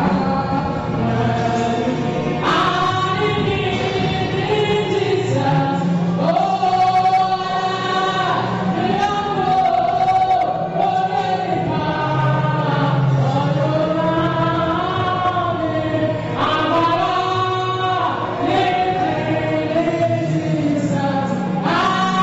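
Gospel singing in church, led by a woman singing into a microphone with other voices joining in, in long held phrases.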